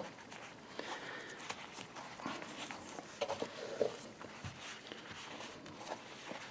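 Faint handling sounds of a black leather knife wrap being untied and unwrapped: soft rustling of leather and cord, with a few small scattered clicks.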